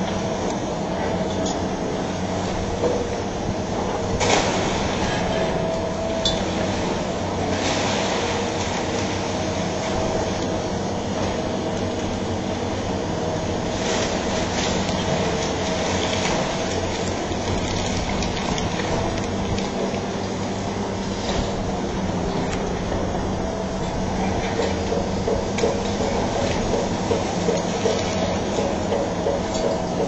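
Long-reach demolition excavator running steadily as it breaks up a concrete building, with scattered cracks and clatter of breaking concrete and falling debris. A sharp crash comes about four seconds in, and a run of quick clattering knocks comes near the end.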